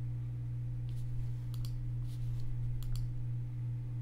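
Computer mouse clicking a few times, twice in quick pairs, over a steady low hum.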